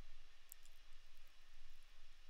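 Faint, even hiss of residual fan noise left after heavy CEDAR sdnx noise suppression at −10 dB, with a low hum underneath. A few faint clicks come about half a second in.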